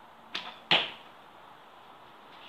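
An arrow being shot from a bow at a cardboard target: two sharp sounds about a third of a second apart, the second much louder with a brief ringing tail.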